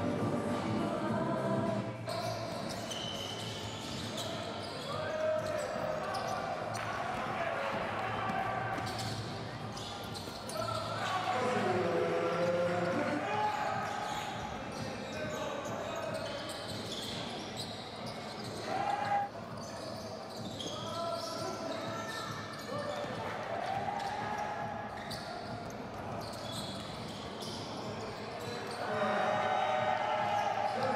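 Sound of basketball play in a large gym: a ball bouncing and sneakers squeaking on the court, with indistinct players' voices.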